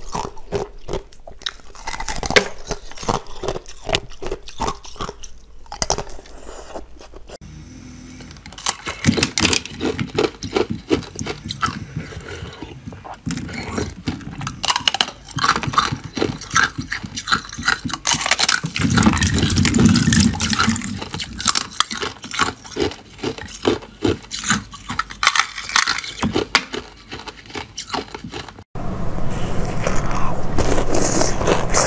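Ice being bitten and chewed close to the microphone: a rapid, irregular run of sharp crunches and cracks as the frozen pieces break between the teeth.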